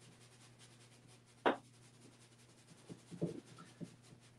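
Flat bristle brush stroking paint across a large stretched canvas: one sharper stroke about a second and a half in, then a few softer strokes near the end.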